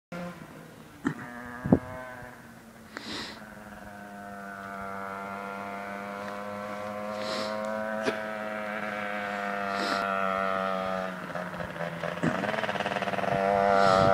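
Rieju MRT Pro's two-stroke engine, bored out to 77cc, droning at steady revs as the bike approaches from a distance and grows louder, easing off and picking up again near the end. Two sharp clicks stand out in the first two seconds.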